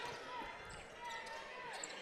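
Game sound from a basketball court: sneakers squeaking on the hardwood floor in several short, bending chirps, with a ball bouncing, all faint.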